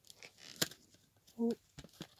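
Paper rustling and light plastic clicks as photo prints are handled and lifted out of an open CD jewel case, with one sharp click about half a second in.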